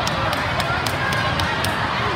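Hubbub of many voices in a busy volleyball tournament hall, with a run of short sharp slaps scattered through it, several a second.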